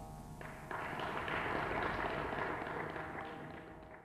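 Audience applause breaks out about half a second in, over the last ringing note of the veena, swells, and then tapers off near the end.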